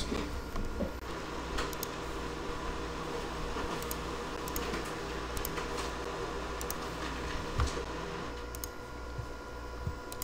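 Quiet room tone: a steady electrical hum with a few faint, scattered clicks and a soft thump about three-quarters of the way through.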